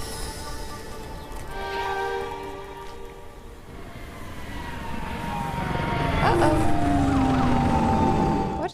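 Animated show's soundtrack: soft held music, then a spaceship's engine building up and whining downward in pitch as the ship flies in near the end.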